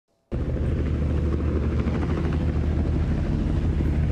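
Helicopter running with its rotor turning, a loud, steady low beating sound that cuts in abruptly just after the start.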